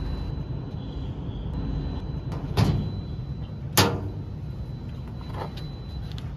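Two sharp clunks about a second apart, then a fainter knock, as the padded seat lid of a steel storage compartment on an electric tricycle is moved and knocks against the box, over a steady low rumble.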